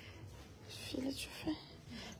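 Only faint, soft speech: a woman's voice, low or whispered, with two short utterances about a second and a second and a half in.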